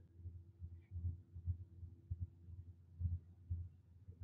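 Faint, irregular low thumps, two or three a second, over a faint steady hum, with no speech.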